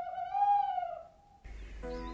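An owl hoot: one long, pitched call that rises slightly and then falls away. Gentle music with held notes starts near the end.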